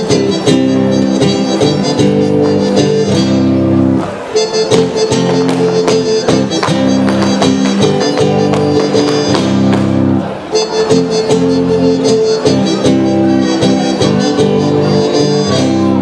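Live gaúcho folk dance music: reedy accordion-type chords held over strummed guitar, with a steady dance beat.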